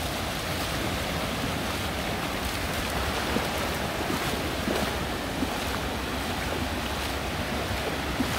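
Ocean surf breaking and washing up on a sandy beach, a steady rushing noise, with wind buffeting the microphone.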